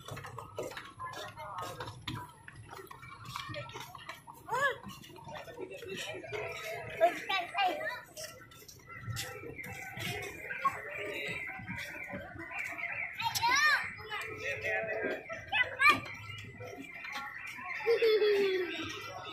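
Scattered chatter of adults and children, with a few high child calls in the second half, over short knocks of footsteps on wooden boardwalk planks.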